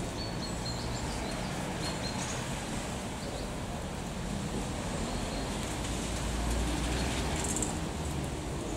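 Outdoor street ambience: a steady low traffic rumble that swells as a vehicle passes about six to seven seconds in, with a few short high bird chirps in the first two seconds.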